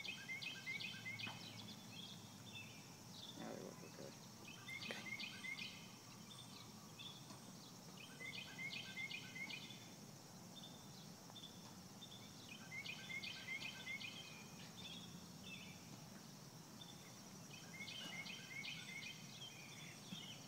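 A bird singing short, quick, chirping phrases that repeat about every four seconds, over a steady high hum of insects.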